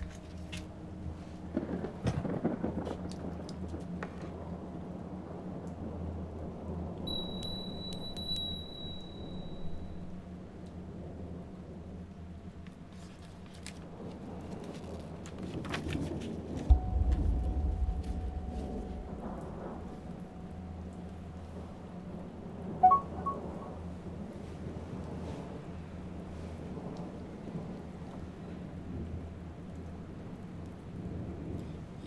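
A steady low rumbling ambience, of the kind PANN files as distant thunder and rain, with scattered small knocks and rustles. A deep boom comes about seventeen seconds in and a sharp hit about six seconds later, and a thin high ringing tone sounds briefly near the start.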